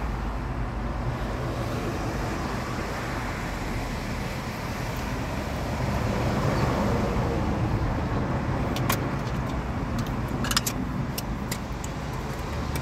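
Steady rushing noise with a low rumble, heard from inside a car parked by breaking surf, swelling a little about six seconds in. A few light clicks come in the last few seconds.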